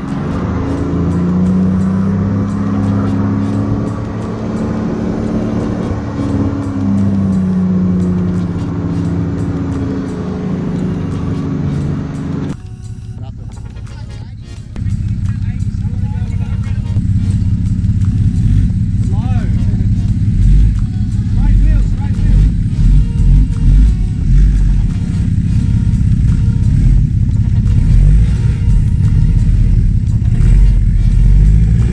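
Four-wheel-drive engines driving on a dirt track. The engine note rises and falls slowly for the first twelve seconds. After a sudden change, a heavier low rumble takes over.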